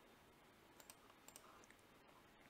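Near silence with a few faint computer mouse clicks in the second half.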